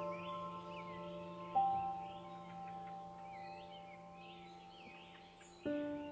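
Soft ambient background music: slow, long-ringing chime-like notes, a new note struck about one and a half seconds in and another near the end, over a bed of chirping birdsong.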